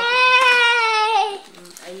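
A single long, high-pitched vocal squeal from a person, about a second and a half long, holding a steady pitch and dipping slightly at the end.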